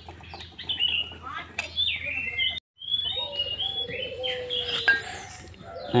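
Small birds chirping repeatedly, with a few light clicks of hand tools. The sound drops out for a moment about halfway through.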